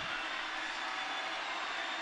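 Steady, even crowd noise of a swimming arena during a race, with no distinct events. A faint steady high tone runs through it.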